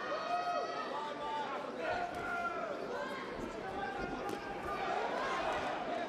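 Arena crowd shouting encouragement to the kickboxers, many voices overlapping, with a few short sharp knocks among them.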